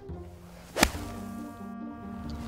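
A single sharp crack of a golf club striking a ball about a second in, the loudest sound, over background music with held notes.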